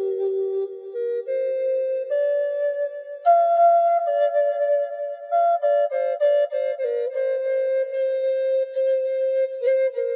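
Instrumental background music: a slow melody of long held notes that moves up and down step by step, louder from about three seconds in.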